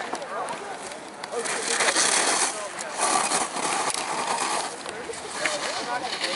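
Racing skis carving on hard-packed snow: two long scraping hisses as the edges bite through turns, one about a second and a half in and a shorter one about three seconds in.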